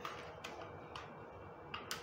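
Scattered light plastic clicks and taps, about five in two seconds, as a white plastic Wi-Fi router and its cables are picked up and handled.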